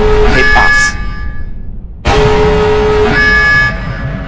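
Loud trailer sound-design horn blasts ('braams') over a low rumble. The first cuts off about a second in, and a second hits about two seconds in and holds for over a second before dying away.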